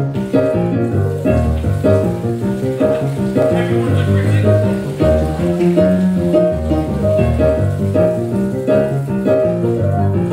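Piano music with a quick, even run of notes over a repeating low bass line.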